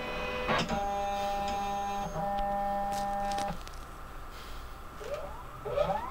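Epson Perfection V800 Photo flatbed scanner initialising after power-on: its carriage motor whines in several steady tones, hitches briefly about two seconds in and stops about three and a half seconds in. A quieter hum follows, with rising whines near the end.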